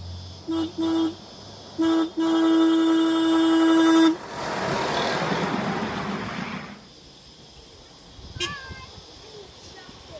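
Miniature railway locomotive's horn: two quick short toots, a third short toot, then one long steady blast of about two seconds. The ride-on train then passes close by, a rushing, rumbling noise lasting a couple of seconds before fading.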